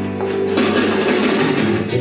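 Live band music in an instrumental passage between sung lines: an electric guitar playing with accompaniment, held notes over a dense, steady mix.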